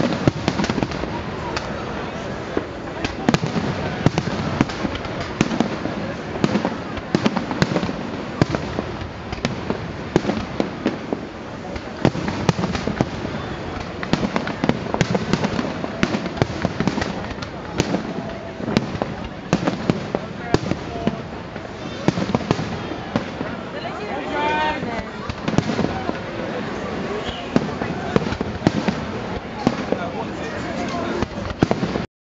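Aerial fireworks display: a continuous, irregular run of bangs and crackles from bursting shells, several a second.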